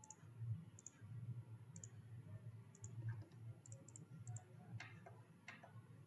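Faint computer mouse clicks, about a dozen spread unevenly and some in quick pairs, over a low steady background hum.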